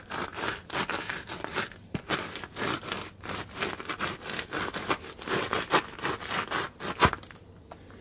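Kitty litter granules being ground into a stain on concrete under a treaded boot sole: irregular gritty scraping and crunching strokes, ending with a sharp click about seven seconds in.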